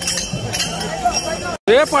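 Repeated bright metallic jingling and clinking over crowd chatter. The sound cuts off abruptly near the end and a loud, high shouting or chanting voice begins.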